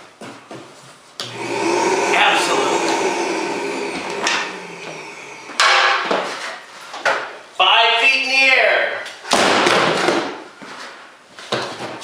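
Ozone generator's motor switched on about a second in, running with a steady hum that fades out a few seconds later. It is followed by sudden loud stretches of noise and a short voice.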